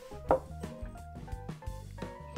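Background music: a steady bass line under held notes, with one louder hit about a third of a second in.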